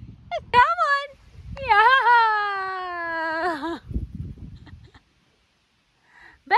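A woman's high-pitched, excited, sing-song cries cheering on a dog: a few short rising-and-falling calls, then one long falling cry lasting about two seconds. A low rumble runs underneath, and the sound cuts out about five seconds in.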